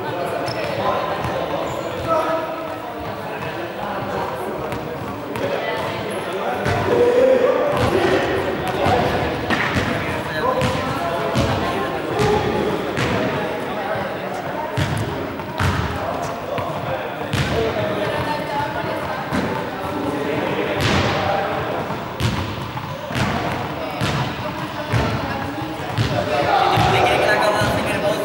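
Juggling balls being caught and thrown, and dropping to bounce on a sports-hall floor: a run of irregular knocks that echo in the large hall, with voices talking in the background.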